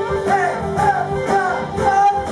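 Live band playing a song: a lead melody that bends and wavers in pitch over drums with evenly repeating cymbal strokes.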